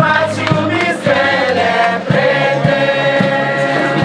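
A choir of many voices singing a song together in long, held notes, over a steady low beat from a bamboo band at about two strokes a second.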